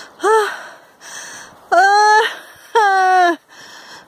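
A woman out of breath from climbing steps: a short 'oh' soon after the start, then two longer drawn-out groans, with heavy breathing between them.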